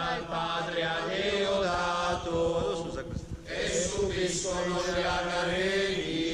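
A group of voices singing a chant that recounts the miracles of St. Nicholas, on long held notes that slide from pitch to pitch, with a steady low note held beneath. The singing breaks off briefly about halfway through.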